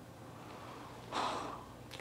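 A person's short, breathy exhale about a second in, against a low room hush.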